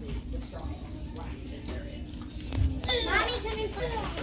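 Indistinct voices over the steady background hum of a store, with a child's voice speaking briefly about three seconds in.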